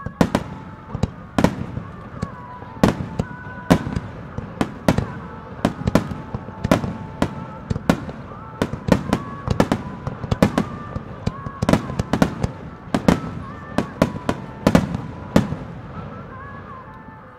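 A starmine barrage of aerial firework shells bursting in quick succession: dozens of sharp bangs at an uneven pace of roughly two or three a second, some louder than others.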